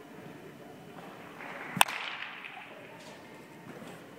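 A baseball bat hits a ball once with a single sharp crack about two seconds in, followed by a brief echo through the large indoor hall.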